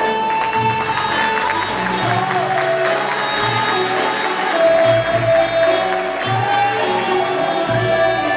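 Turkish folk music ensemble playing an instrumental passage: a held melody line that glides between notes, over plucked bağlama strings and recurring low bass notes.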